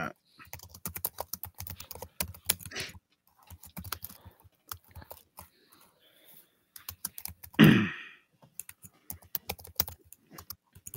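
Typing on a computer keyboard: irregular runs of clicking keystrokes. A single short vocal sound from a person cuts in about three-quarters of the way through and is the loudest thing heard.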